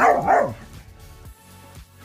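A dog barks twice in quick succession, then music with a steady beat, about two beats a second, takes over.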